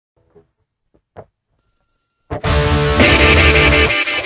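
Near silence with two faint clicks, then a distorted electric guitar riff starts loudly a little over two seconds in.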